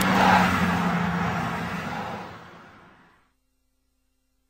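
A motor vehicle passing by, a rushing noise with a low hum that is loudest at the start and fades away, ending about three seconds in.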